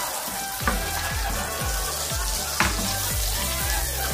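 Chopped onion sautéing in hot oil in a pot, a steady sizzle, stirred with a spatula with a couple of short knocks, under background music with a regular beat.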